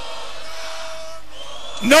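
Crowd in a club making a steady wash of noise in answer to a call for an encore, which the MC judges too quiet. A man's voice cuts in loudly near the end.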